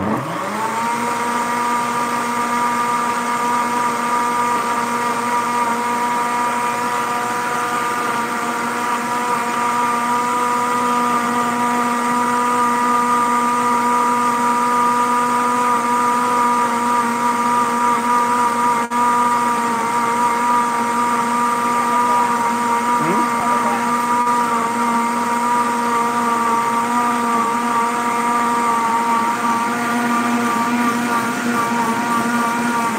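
Countertop blender motor spinning up and then running steadily at high speed through a full jar of fruit smoothie with ice, a steady hum with a brief click and dip about two-thirds of the way through.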